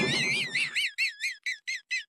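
Comic sound effect: a rapid series of high, squeaky rising-and-falling chirps, about five a second. They break into separate chirps about a second in and grow fainter.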